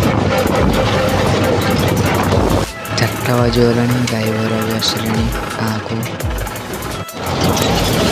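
Tractor engine running while driving, with wind and road noise. About two and a half seconds in it cuts abruptly to music with a singing voice in held notes. The engine noise returns just before the end.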